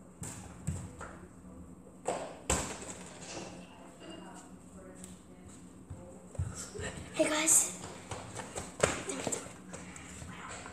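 Several sharp thuds, spread out and irregular, of a football being kicked and bouncing during an indoor game.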